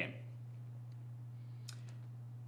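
A pause in speech holding only a steady low electrical hum, with a couple of faint, short clicks near the end.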